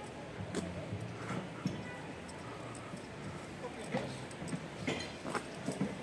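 Quiet street ambience: faint voices of people talking a little way off, with scattered light clicks and taps through it.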